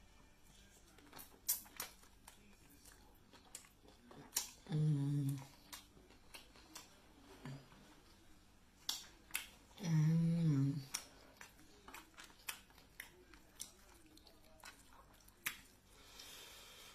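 Close-up eating sounds: irregular sharp clicks and snaps of chewing and of crab shell being picked apart. Two short hummed "mm" sounds come about five seconds in and again about ten seconds in.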